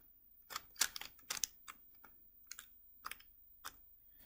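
A stickerless 3x3 speed cube turned by hand through a commutator: about ten short plastic clicks of separate layer turns, unevenly spaced and clustered in the first half.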